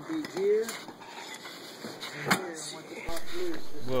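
Sharp metallic clinks and a knock from steering parts and tools being handled in a workshop, with faint voices behind. About three seconds in the sound cuts off abruptly to a steady low hum.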